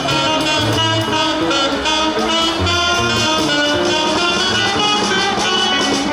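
Live jazz from a small band: tenor and alto saxophones playing a melody together over electric guitar, with low bass notes beneath.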